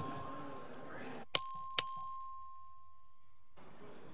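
Two sharp metallic dings about half a second apart, each ringing on for about a second: a small bell struck twice.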